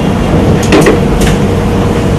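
A steady loud hum and hiss, with a brief cluster of short knocks just under a second in and one more a little after a second.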